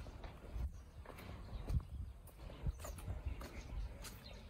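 Footsteps of a person walking on open ground, irregular knocks about twice a second over a low rumble.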